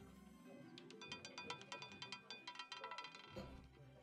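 Faint music with a rapid run of light clicks, starting about a second in and lasting about two seconds, typical of a roulette ball clattering over the wheel's pocket frets before it settles.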